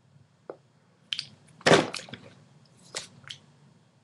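A few short wet clicks and smacks while lipstick is put on lips held open. The loudest is a sharp smack a little before halfway, with two smaller ones near the end.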